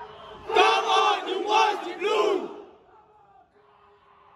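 A crowd of football supporters chanting together in unison: a loud shouted chant in four strong beats from about half a second to two and a half seconds in, then dropping back to fainter singing.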